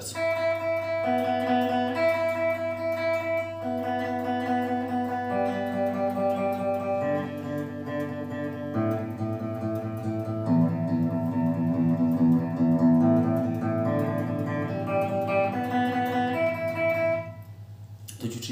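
Seven-string electric guitar with each open string picked several times in a steady rhythm, moving string by string from the thinnest down to the lowest strings and climbing back up near the end: a pick-control exercise on open strings.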